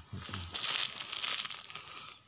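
Close rustling and crinkling noise lasting about two seconds, with a few low bumps at its start.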